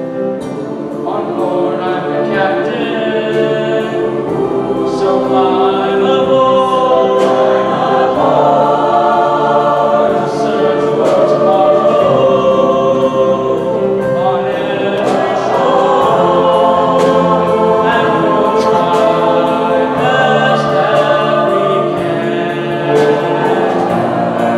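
School concert choir singing in harmony, with piano and band accompaniment, swelling louder over the first few seconds.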